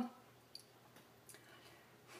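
Near-silent room tone with a couple of faint, brief clicks, one about half a second in and another just past a second.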